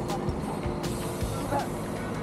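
Background music over a city bus idling steadily at the kerb with its door open.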